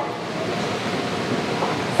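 A short pause in speech filled with steady, even background noise, with no distinct events.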